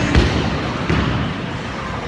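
Bowling-alley din: a low thud about a fifth of a second in, then a steady noisy rumble of the hall.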